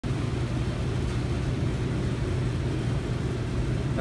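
Steady low mechanical hum of ventilation machinery, even throughout with no breaks.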